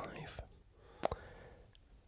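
A wooden chess pawn set down on a wooden chessboard: one short click about a second in.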